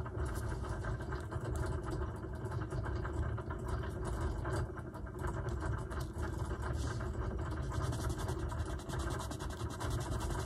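A steady low rumble, like a machine running, with faint rubbing and light taps from a glue stick being worked over paper scraps.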